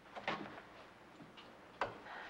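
A few sharp clicks of a door being handled, from its knob and latch: a couple shortly after the start, a fainter one later and a louder one near the end.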